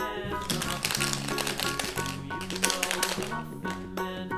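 Background music, with many small clicks and taps of a hollow plastic toy egg being picked up and handled.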